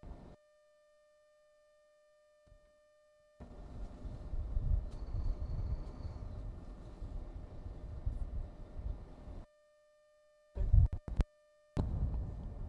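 Low rumbling wind buffeting the microphone from about three seconds in, over a steady thin whine. It cuts out to dead silence at the start and again near the end, followed by a couple of short loud knocks.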